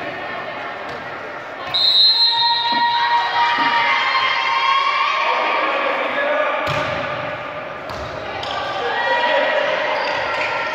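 Voices shouting and calling out, echoing in a large sports hall during a volleyball rally, with a couple of sharp volleyball hits near the end.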